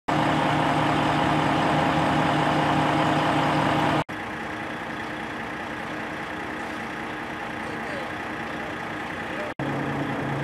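Steady idling engine hum with a low drone. It cuts off abruptly about four seconds in to a quieter steady rumble, and cuts again near the end, where the hum returns.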